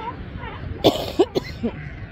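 A person coughs close by, a few quick coughs starting just under a second in. Faint wavering calls of California sea lion pups and surf noise carry on underneath.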